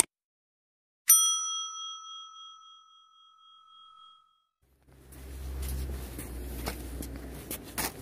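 A single bright bell ding, the notification-bell sound effect of a subscribe animation, struck once about a second in and ringing out over about three seconds. About five seconds in, outdoor background noise with a low rumble takes over.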